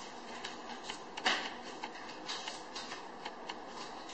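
Playing cards being dealt and turned over onto a table: a scatter of light card snaps and slides over a steady background hiss, the sharpest snap a little over a second in.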